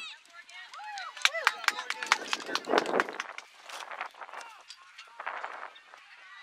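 Scattered distant shouts and calls of people across an open soccer field, with a run of sharp short taps in the middle.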